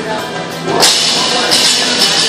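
Loaded barbell with bumper plates dropped from overhead onto the rubber gym floor: one sharp crash a little under a second in, over steady background music.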